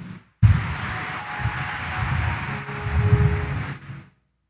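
Congregation noise: a steady wash of rustling and murmur from a large crowd, starting about half a second in and cutting off abruptly at the end.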